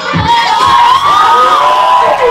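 A group of children shouting and cheering, several high voices overlapping and sliding up and down in pitch.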